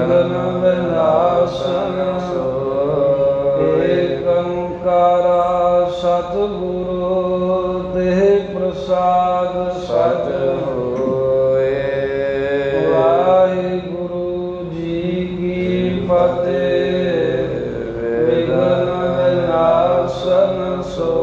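A man's voice chanting Sikh devotional verses in a slow, drawn-out melody with sliding notes, over a steady held drone.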